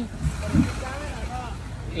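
A Jeep's engine idling with a steady low rumble under talking, with a brief low thump about half a second in.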